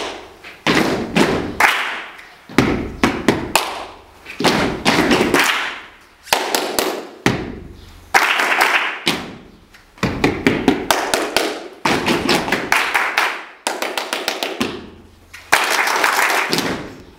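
Group body percussion: many people clapping hands together with heavy thumps, likely stamped feet, in short rhythmic phrases broken by brief gaps. It is a repetition exercise in which the group copies the leader's rhythmic patterns.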